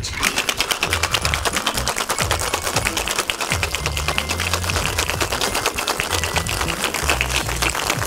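Ice rattling hard and fast inside a metal tin-on-tin cocktail shaker during a vigorous hard shake, an even rapid rhythm of sharp clicks that keeps going throughout.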